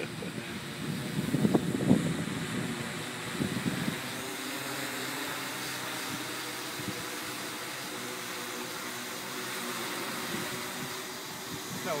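Dodecacopter's twelve electric motors and propellers running in flight, a steady hum of several close tones. Laughter breaks over it about a second or two in.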